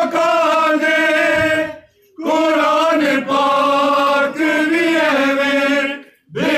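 A group of men chanting a Punjabi noha, a mourning lament, together on long-held notes. The chant breaks off briefly about two seconds in, then starts again.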